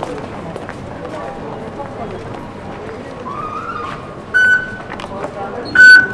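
Two short electronic beeps from metro fare-gate card readers, one about four seconds in and a louder one near the end, over the steady background noise of a busy station concourse.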